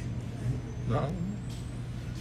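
A steady low background hum, with a brief stretch of a person's voice about a second in.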